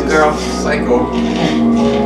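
TV drama soundtrack: background score with held tones and a voice speaking over it.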